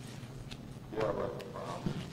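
A faint, muffled man's voice about halfway through, coming over a remote video link, with a few light clicks.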